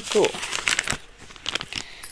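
A voice ends a word with a falling pitch, then about a second and a half of irregular crackling and clicking noise follows.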